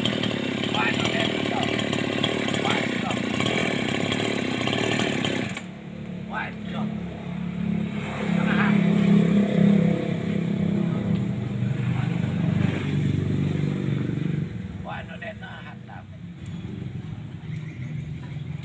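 Gasoline chainsaw running at high revs, then dropping abruptly to a lower, steadier idle about six seconds in; the idle fades further a couple of seconds before the end.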